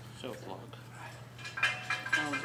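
Metal clinking with a short ringing about one and a half seconds in, against faint voices in a gym.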